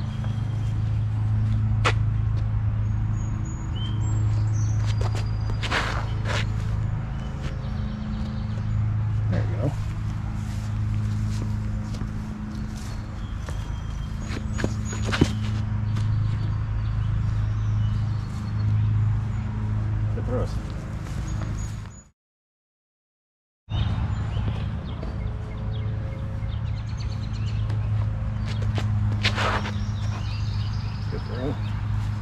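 A steady low hum with faint birds chirping over it and a few sharp knocks. The sound drops out for about a second and a half roughly two-thirds of the way through.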